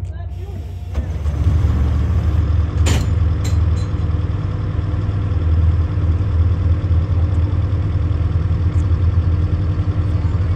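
Electric trolley car running with a steady low rumble that grows louder about a second in, with a sharp click near three seconds.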